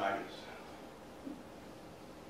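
A man's voice ending a word, then quiet room tone in a small room, with one faint brief sound a little over a second in.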